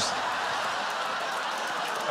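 Studio audience laughing and applauding: a steady, even wash of crowd noise.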